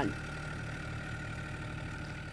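A steady low engine hum, like a vehicle idling, running evenly without change.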